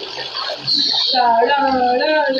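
Water splashing in a shallow tiled pool as someone moves through it, with a voice talking over it from about a second in.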